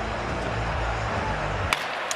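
Hockey arena crowd noise, a steady murmur over a low rumble, that cuts off abruptly near the end and gives way to a sharp knock of a stick or puck on the ice.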